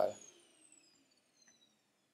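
The last syllable of a man's spoken word at the very start, then near silence.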